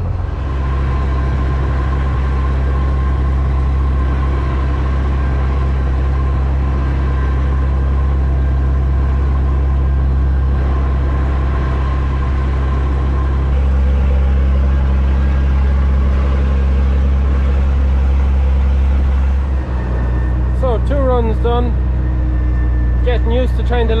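Massey Ferguson 3690 tractor engine running steadily under load as it pulls a six-furrow wagon plough, heard from inside the cab. Its note shifts a little a couple of times and dips briefly about 20 seconds in.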